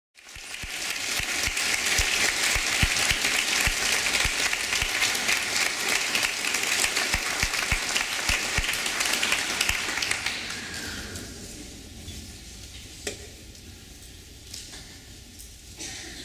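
Audience applauding in a concert hall, dying away about ten to eleven seconds in. The hall then falls hushed, with one small knock a couple of seconds later.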